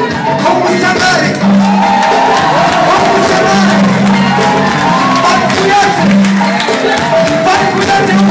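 A live Malian Wassoulou band playing, with drums and percussion over a low bass figure that repeats about every two seconds. A voice sings over the band in the middle, and the crowd can be heard.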